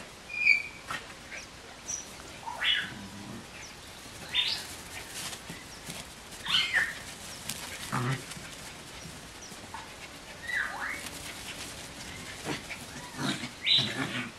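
Eight-week-old puppies yipping and squealing as they play, with short high-pitched calls every second or two and a few lower, louder ones.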